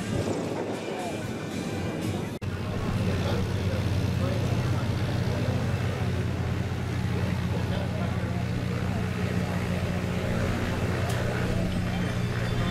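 Single-engine light propeller planes: a plane's engine during takeoff, then after an abrupt break a steady propeller-engine drone with an even low hum that does not change in pitch.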